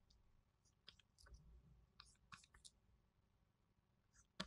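Near silence, with a few faint short clicks about a second in and again just after two seconds.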